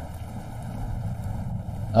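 Steady recorded rain ambience: an even wash of rainfall noise with a low rumble underneath.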